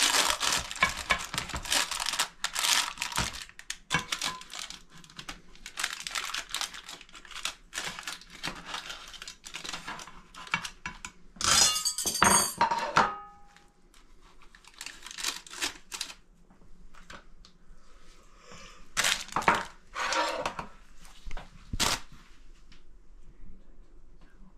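A pie server scraping and crunching through a baked cheese-and-egg pie, with the baking paper lining the tin crinkling. About halfway through comes a louder clatter with a short ringing tone, then more scraping and a sharp click near the end.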